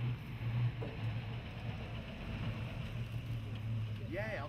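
Toyota Land Cruiser pickup's engine running as the truck drives slowly, a steady low hum with a light rumble.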